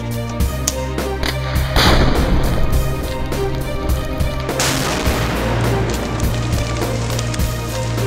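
Two explosive blasts from charges set in a danger tree, one about two seconds in and a second a few seconds later that fades out over about a second, over background music.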